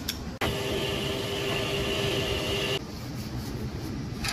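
A steady machine hum with a high whine, starting suddenly about half a second in and cutting off suddenly a little under three seconds in, over a constant low background rumble.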